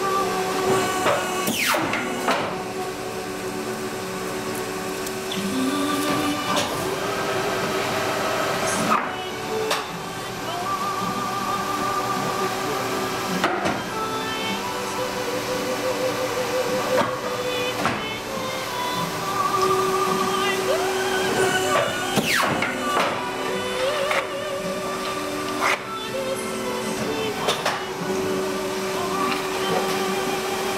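Guillotine paper cutter running with a steady motor hum while paper stacks are handled and cut, with several sharp knocks scattered through, over background music.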